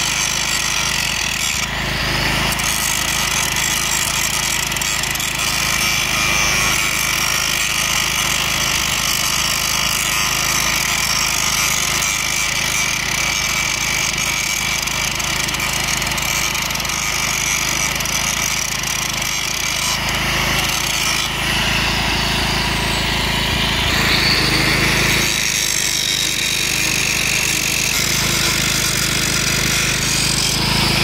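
Handheld electric angle grinder with an abrasive disc grinding a steel rail, a loud steady whine over the grinding noise. The tone shifts a few times about two-thirds of the way in.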